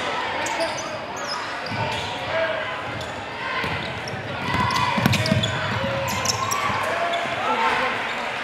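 Live game sound in a school gym: crowd voices and shouts, sneakers squeaking on the hardwood and the basketball bouncing, with the crowd getting louder about five seconds in.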